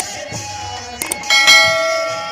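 Stage music from a live dance show, with a subscribe-button sound effect laid over it: two quick clicks about a second in, then a bell ding that rings out and fades.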